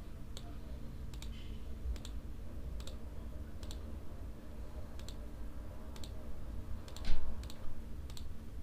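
Computer mouse clicks, about a dozen spaced irregularly a second or so apart, with a louder one about seven seconds in, over a steady low electrical hum.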